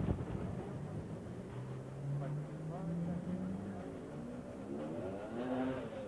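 A motor vehicle engine running close by, its note rising gradually for about two seconds and then fading, with faint voices in the background.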